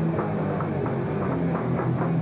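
Hardcore band playing live: distorted electric guitars and bass over drums hit about four or five times a second, heard muffled on a low-fidelity recording.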